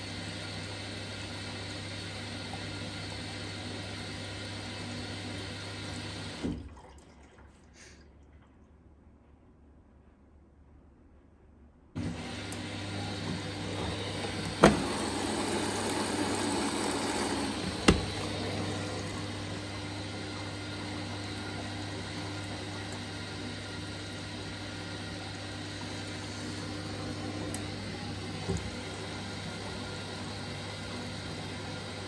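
Hyundai HY8-5SL (Vestel-built) front-loading washing machine filling with water at the start of a boil wash, water rushing in through the detergent drawer with a steady hum. The sound drops away about six seconds in and comes back suddenly about twelve seconds in, with two sharp clicks a few seconds later.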